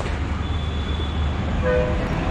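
Steady low rumble of street traffic, with a brief pitched vehicle horn toot near the end.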